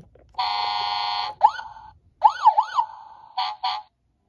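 Electronic siren sound effects from a Toy State Road Rippers toy fire truck's speaker, set off by pressing its button. A steady buzzing tone sounds first, then several rising-and-falling siren wails, then two short blasts near the end.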